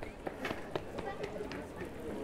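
Busy pedestrian street: passers-by talking in the background and quick, regular footsteps on stone paving, about four a second.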